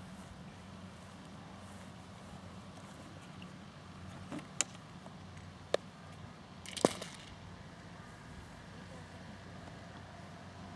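Putters striking golf balls on a green: three short, sharp clicks about a second apart, the last the loudest, over a steady low rumble.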